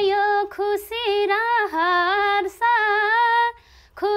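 A woman singing a Nepali dohori folk melody solo, a high held voice with ornamented turns in the pitch, sung in short phrases with breaths between them and a brief stop near the end.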